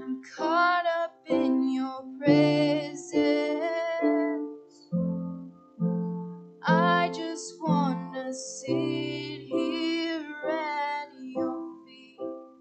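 Live worship music: a keyboard holding slow sustained chords while a voice sings drawn-out phrases over them, several times stopping and coming back in.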